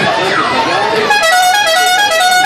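Electronic musical horn sounding the start signal for a children's car ride. Swooping tones fill the first second, then it plays a quick tune of stepped, alternating notes.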